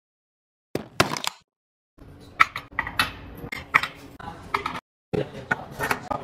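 Pierced metal candle holder clinking and knocking against its metal frame as it is handled, in short separate groups of sharp clicks with gaps of silence between them.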